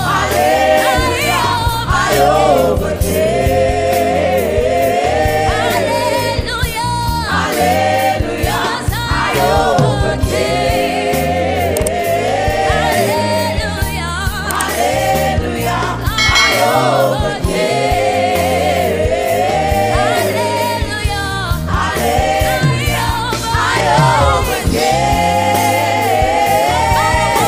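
Live gospel choir singing a worship song with a full band: drum kit with cymbals keeping a steady beat under the voices, and a bass line below.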